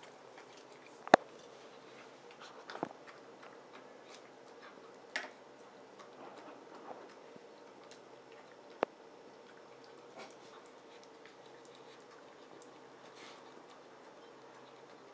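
A dog eating from a stainless steel bowl: quiet chewing and licking, with a few sharp clinks against the metal, the loudest about a second in and others spread through the rest.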